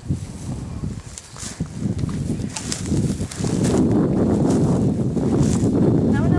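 Wind buffeting the camera microphone outdoors as a low, noisy rumble that grows stronger about three seconds in, with light rustling and clicks over it.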